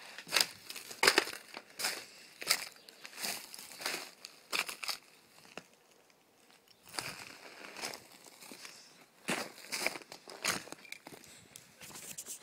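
Footsteps crunching irregularly over charred debris and ash from a burnt-out house, with a quieter lull about halfway through.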